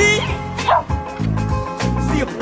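Funk music with a steady bass beat, and a dog barking twice over it, near the start and again a little under a second in.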